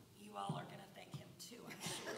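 Faint, soft speech, close to a whisper, from a voice away from the microphone.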